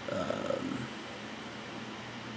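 A steady low background hum, with a brief short pitched sound in the first second.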